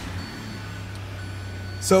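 A 2020 Kia Sedona's 3.3-litre V6 idling just after start-up, a steady low hum heard from inside the cabin.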